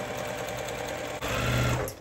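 Electric sewing machine stitching a seam through small quilting-cotton pieces, running steadily, then louder from just past a second in, and stopping near the end.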